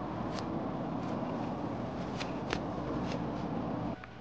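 Hands rustling through purslane plants and scraping at the soil while picking the greens, a steady close rustle with a few sharp clicks.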